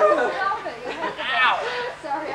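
Indistinct chatter: several people talking over one another, no words clear.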